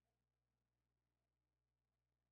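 Near silence: a videoconference with no one speaking, only a very faint steady low hum.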